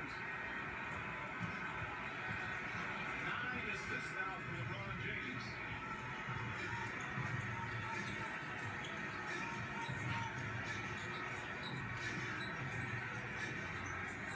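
A television playing in the background: indistinct speech and music at a steady, fairly low level.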